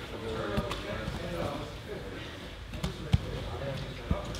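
Bodies and hands thudding and slapping on grappling mats, a few sharp impacts with the loudest a little after three seconds, over a steady murmur of indistinct voices from the gym.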